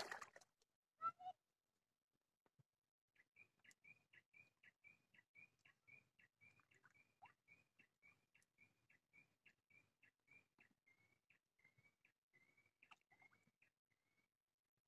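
Faint, rapid series of short, high whistled bird notes, about three a second, repeating evenly for around ten seconds, after a soft click about a second in.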